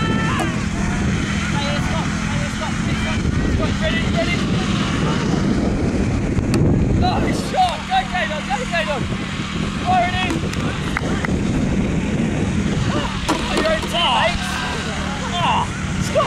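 Wind rumbling steadily on the microphone, with children and adults shouting and calling in the background throughout.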